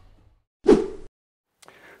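A short, loud whoosh-like sound effect, starting suddenly a little over half a second in, fading, then cutting off abruptly after about half a second.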